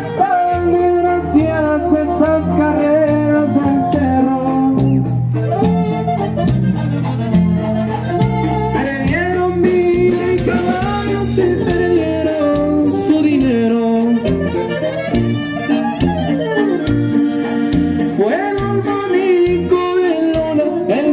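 Live band playing a song through PA speakers: accordion and saxophone over bass, guitar and drums, with singing.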